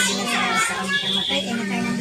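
Several voices, children's among them, talking over one another, over a steady low held tone.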